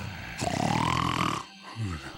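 A cartoon Triceratops snoring in its sleep: a long, rumbling snore with a rising whistle over it, a short pause, then the next snore starting near the end.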